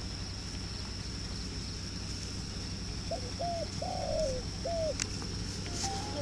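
A dove cooing: four short coo notes in quick succession about three seconds in, over a steady rural background with a constant high-pitched whine.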